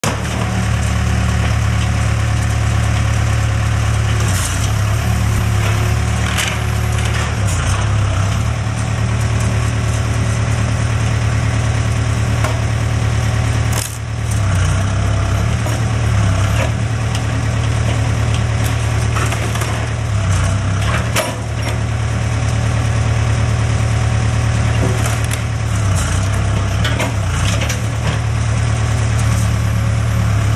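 Case backhoe loader's diesel engine running steadily while the backhoe bucket tears into a wooden garage roof. Timber cracks and splinters several times over the engine, with the sharpest cracks about halfway through and again about two-thirds through.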